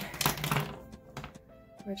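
Clicks and rustling of plastic pens and pencils being handled in a fabric pencil case for the first half-second or so, then quiet with faint background music.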